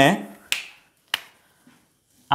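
Two sharp clicks from a whiteboard marker, about two-thirds of a second apart.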